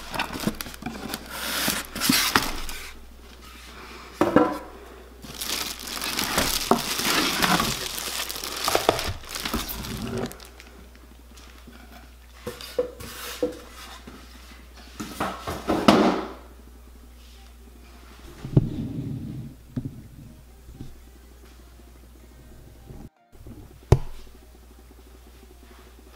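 Cardboard box, foam packing and a clear plastic bag being handled during unpacking: rustling, scraping and crinkling with occasional knocks, busy through the first ten seconds and sparser after.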